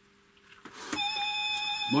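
A couple of faint clicks, then a steady pitched tone with high overtones that starts about a second in and holds without changing pitch.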